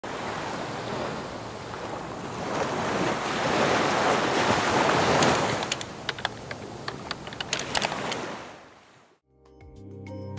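Ocean surf noise swelling and easing off, with a quick run of keyboard-typing clicks from about six to eight seconds in. It fades out and music begins near the end.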